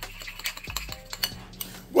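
Metal spoon stirring a creamy sauce in a ceramic bowl, with irregular light clinks and scrapes against the bowl.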